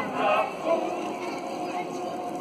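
A mixed group of voices singing a Basque Christmas carol together, holding long notes, loudest in the first half second and then softer.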